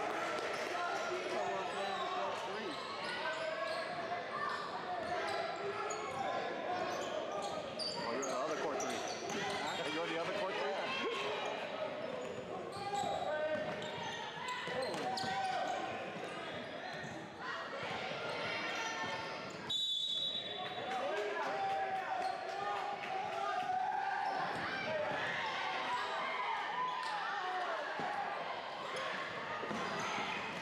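A basketball bouncing on a hardwood gym floor during play, under constant overlapping voices of players and spectators echoing in a large hall. There is a brief high-pitched tone about two-thirds of the way through.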